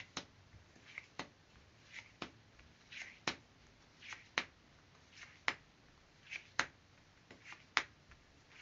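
Tarot cards being drawn one by one from a deck fanned across a table: a soft slide of card against card, then a sharp card snap, about once a second, eight times over.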